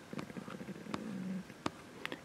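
Quiet room with a few soft clicks and a short, faint low hum a little past the middle.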